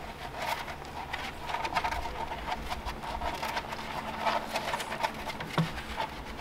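A litter of three-week-old Boston terrier puppies nursing: many small, irregular wet clicks and smacks of suckling, mixed with paws slipping and scrabbling on a plastic floor.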